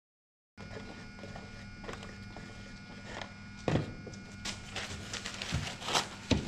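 About half a second of silence, then a steady electrical room hum with scattered light knocks and a louder knock a little past the middle. Toward the end, a quick run of small crackles as a paper towel is pulled and torn from a roll.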